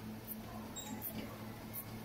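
Elliptical cross-trainer in use: a faint, short high squeak repeats about every three quarters of a second with the strides, over a steady low hum.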